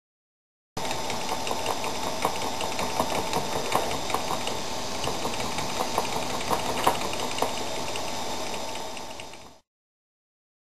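Homemade hobby CNC milling machine running: a steady whine with irregular ticking and rattling, starting about a second in and fading out near the end.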